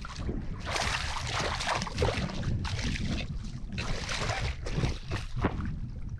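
Hooked redfish thrashing and splashing at the water's surface in irregular bursts, over a steady low rumble of wind on the microphone.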